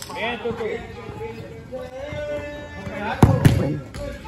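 Football match play on an artificial-turf court: players shouting and calling, one voice held for about a second midway, and the ball thudding, with a thud at the start and two loud thuds in quick succession a little after three seconds in.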